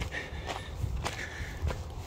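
Footsteps of a person walking over grassy, stony ground, about four steps roughly half a second apart.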